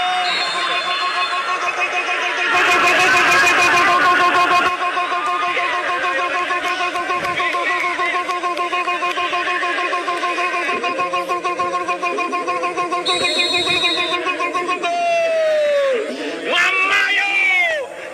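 An excited voice, most likely the match commentator shouting a long drawn-out goal call, over a steady held tone that runs for most of the stretch. About 15 s in, the pitch slides down, then swoops up and falls again near the end.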